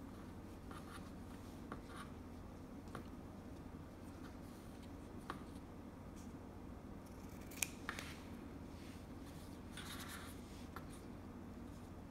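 Scissors snipping satin ribbon: a few separate short snips a second or more apart, the sharpest a little past halfway, over a faint steady room hum.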